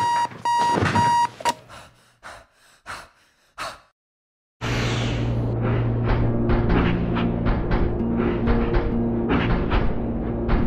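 An electronic alarm clock beeping in quick repeated bursts, stopping about a second and a half in, followed by a few fading knocks. After a brief silence, about halfway through, the sound-designed walking of a giant mechanical castle starts: a steady low rumble with rapid metallic clanks and creaks, and sustained music-like tones under it.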